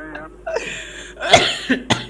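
A man laughing hard, his laughs turning breathy and ending in a loud cough about a second and a half in.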